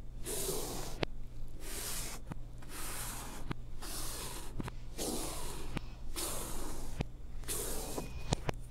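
Chalk stroking across a blackboard, played in reverse: a series of scratchy sweeps about one a second, each swelling up and ending in a sharp tap where the chalk meets the board.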